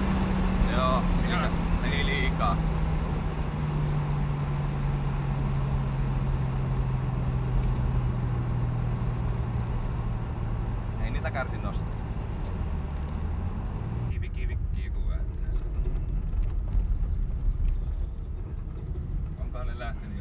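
Turbocharged BMW M50 straight-six in an E30, heard from inside the cabin: its note falls slowly as the revs come down, then drops away about fourteen seconds in. Through it comes a light rattle, which turned out to be bolts that had worked loose.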